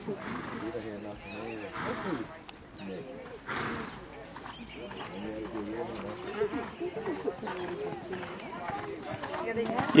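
Quiet talk of nearby spectators over the muffled hoofbeats of a show jumper cantering on sand footing, with a few short bursts of noise in the first four seconds.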